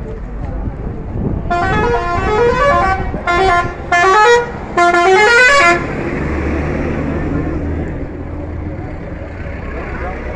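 A bus's musical horn plays a tune of short, stepped notes that climb in pitch, sounded in about four bursts over some four seconds. The bus's engine then runs low as it passes close by.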